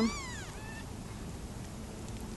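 A newborn kitten mewing: one high-pitched cry that rises and falls, then a short, fainter one just after.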